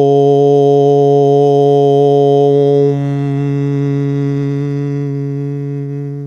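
A man chanting one long "Om" on a single steady low note. The open "o" closes into a hummed "m" about three seconds in, and the hum then fades away.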